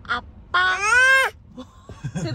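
A 13-month-old baby's voice: a brief sound, then a loud, drawn-out shout about three-quarters of a second long whose pitch rises slightly and then falls.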